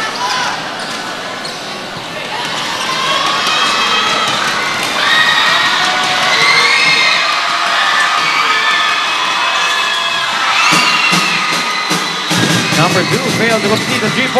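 Large crowd of mostly young spectators cheering and shouting inside a gymnasium, many high voices overlapping and swelling through the middle. Near the end come sharp knocks of a basketball bouncing on the court as play goes on.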